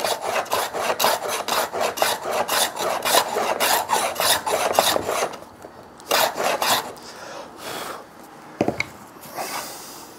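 An HNT Gordon side rebate plane, the left-handed one of the pair, takes quick short scraping strokes along the side of a rebate to widen it for a fit that is still a little too tight. The strokes run fast for about five seconds, a few more follow, and a single knock comes near the end.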